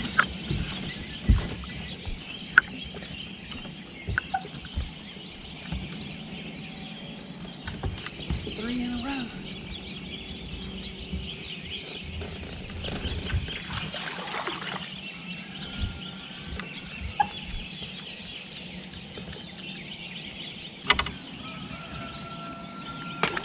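Birds calling over a steady high hiss, with scattered sharp clicks and knocks; a wavering pitched call stands out about nine seconds in.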